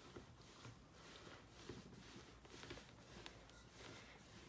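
Near silence, with faint soft swishes of a wooden rolling pin rolling out floured puff pastry dough on a wooden board.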